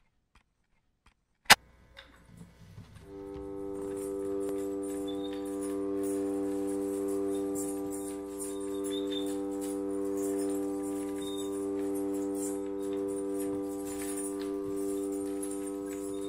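A hurdy-gurdy drone swells in about three seconds in and then holds as a steady chord of unchanging notes, after a single sharp click near the start.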